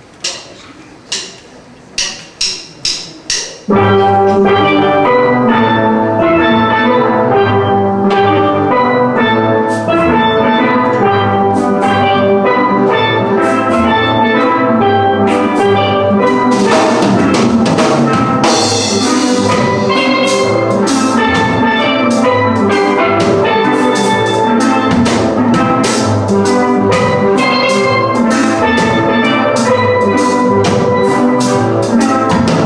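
Six sharp clicks counting in, two slow then four quick, followed by a steel drum orchestra of pans with drum kit coming in together on a slow reggae tune and playing on with a steady beat.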